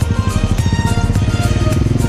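Background music playing over the rapid, steady pulsing of a Honda XLR200's single-cylinder engine.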